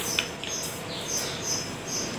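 A small bird chirping repeatedly, short high chirps a few times a second.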